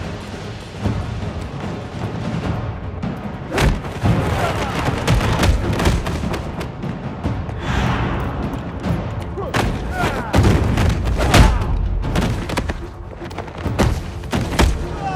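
Action film score music with loud booming hits over it: a strong hit about three and a half seconds in and several more between about ten and twelve seconds.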